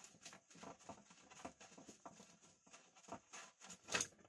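Faint, scattered clicks and light knocks of pipe and tools being handled, with one sharper click near the end.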